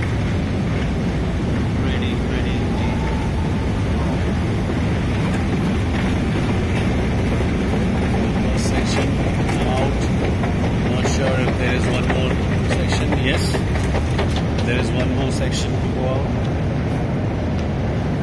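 Long metro escalator running with a steady low rumble from its machinery, heard from the moving steps. In the second half a few short clicks come through, along with faint voices.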